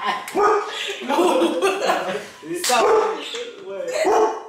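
A pet dog barking among women's voices and laughter.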